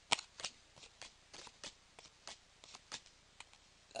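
Pokémon trading cards being slid one by one off a hand-held stack, each card giving a short papery flick. There are about a dozen flicks, roughly three a second, and the first is the loudest.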